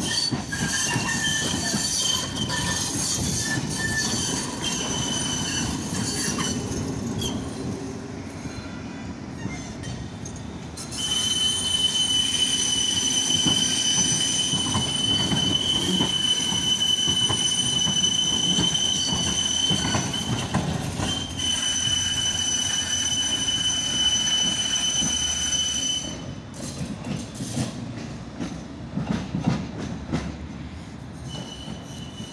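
Pesa tram's steel wheels squealing in a steady, high-pitched squeal as the tram takes the curving junction track, over a low rumble of its running gear. The squeal is loudest through the middle, then gives way near the end to a run of clacks as the wheels cross the junction's rail joints and points.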